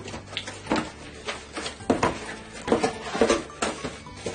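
Corrugated cardboard box being opened by hand: flaps pulled back and cardboard rubbing and knocking in a series of irregular scrapes and taps.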